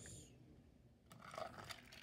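Near silence, with a few faint plastic clicks and rubs in the second half as a toy train engine is handled and its body pulled off the chassis.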